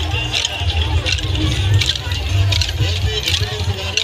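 Kolatam sticks clacking in rhythm, about twice a second, during a Bathukamma circle dance, over a heavy bass beat and a crowd of women's voices.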